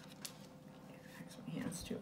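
A sharp tap of tarot cards on a cloth-covered table and a few faint card clicks, then a woman murmuring softly under her breath near the end.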